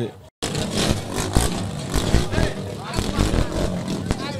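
After a brief dropout about a third of a second in, a car's engine running as it passes close by, amid the voices of a crowd.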